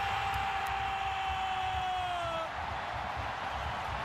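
Stadium crowd cheering a goal, a steady wash of noise. Over it the commentator's drawn-out goal shout is held on one note and trails off about two and a half seconds in.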